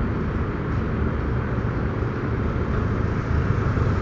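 Steady city street traffic noise: cars and other vehicles running past, with a continuous low hum of engines and tyres.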